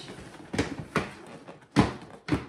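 Large cardboard box of coffee pods being handled and turned over: rubbing, and a few dull knocks, the loudest shortly before the end.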